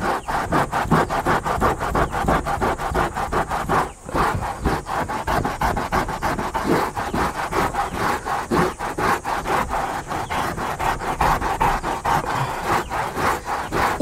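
Microfiber cloth rubbed hard back and forth over a fabric car headliner, a quick, even rhythm of scrubbing strokes with a brief pause about four seconds in. The cloth is working shampoo foam into the lining to lift dark smoke stains.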